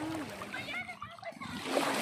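Small waves washing over pebbles in shallow seawater, swelling a little near the end, with faint voices of people, some of them children, in the distance.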